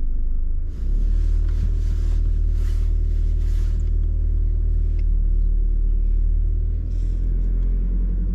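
Car engine and road noise heard from inside the cabin as the car moves off slowly: a steady low sound with a brief dip about a second in.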